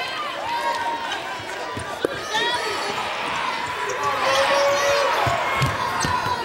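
Basketball dribbled on a hardwood court, a few bounces near the end, with a sharp knock about two seconds in. Arena crowd noise and voices calling out run throughout.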